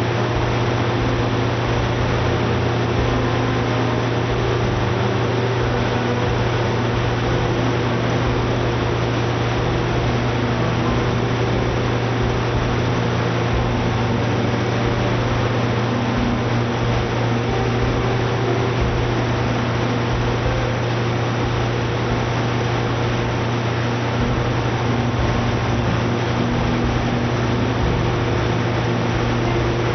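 Coates CSRV (spherical rotary valve) industrial engine generator running on natural gas under full load, a steady, unchanging run with a strong low hum.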